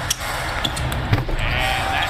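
Court sound from an NBA broadcast: a basketball thudding on the hardwood floor about three times, over steady arena crowd noise, with a drawn-out squeak-like tone near the end.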